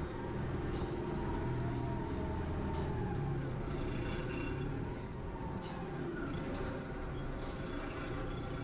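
MacLean underground rock bolter tramming slowly, its engine running with a steady low hum. A faint whine sits on top for the first few seconds.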